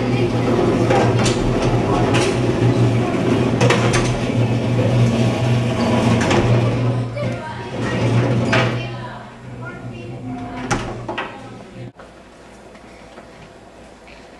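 Metal-framed classroom chairs and desks clattering and knocking as children drag and pile them against a door, under excited children's voices and a steady low hum. The clatter and chatter are loud until about nine seconds in, then thin out to a few knocks, and the sound drops away suddenly near the end.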